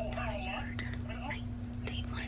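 A woman whispering over a steady low hum.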